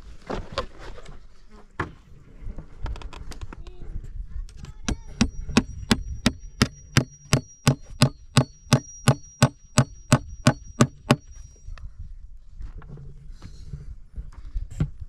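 A steel claw hammer drives a nail into a wooden board and post with a run of about twenty even blows, about three a second. A high ringing note sounds through the hammering, which stops short near the end.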